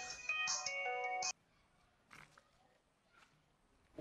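A mobile phone ringtone melody of steady electronic notes. It cuts off suddenly just over a second in, and near silence follows.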